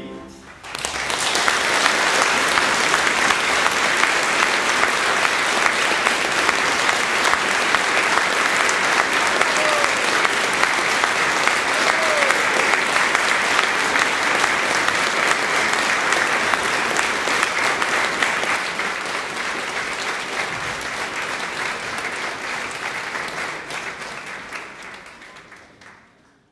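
A large audience applauding, starting about a second in as the singing ends, steady and then fading out near the end.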